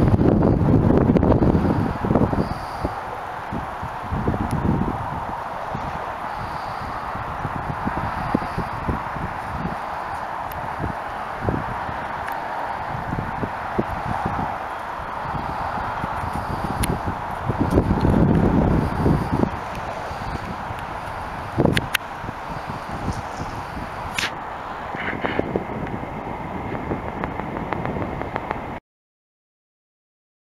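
Wind buffeting the camera microphone in low, rumbling gusts over a steady hiss. The gusts are strongest at the start and again about two-thirds of the way through.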